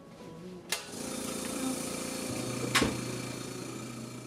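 Small California Air Tools air compressor starting with a click about a second in, then running with a steady noise and low hum. A sharp snap comes near the end of the third second.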